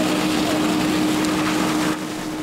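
Fire engine running its pump to supply a hose stream: a steady engine hum with a constant, even hiss over it.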